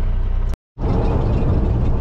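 Steady low drone of a semi-truck's diesel engine and road noise heard inside the cab, broken by a brief silent gap about half a second in, after which the drone goes on as highway cruising.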